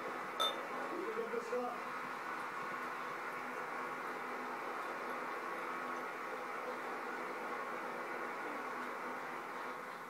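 Duvel Belgian golden ale being poured from its bottle into a tilted glass, a steady stream of pouring and foaming. It is poured hard and builds a tall head.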